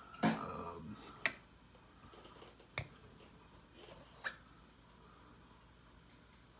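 Three sharp clicks, about a second and a half apart, over faint room noise: a hand handling the painting holder that carries a miniature figure's head.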